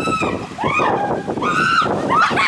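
High-pitched voices calling out in drawn-out squeals: one held note that stops just after the start, a rising-and-falling call, then another held high note near the end.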